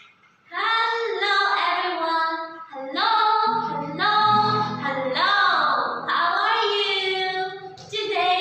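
High, bright singing of a children's nursery-rhyme-style song with music behind it, starting about half a second in after a brief gap.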